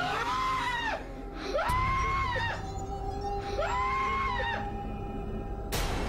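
A man screaming in terror: three long, high-pitched screams of about a second each, over a steady, eerie music drone. A sharp crack comes just before the end.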